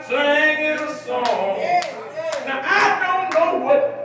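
A man's voice carrying a line in a sung, chanted preaching style, joined about a second in by sharp hand claps, about two a second, five or so in all.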